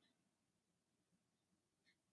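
Near silence: room tone, with one faint short tick near the end.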